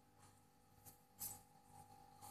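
Near silence: room tone with a faint steady hum, and one brief faint tap a little past halfway through.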